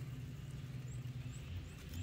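Quiet outdoor ambience: a steady low hum with a few faint, short, high chirps scattered through it.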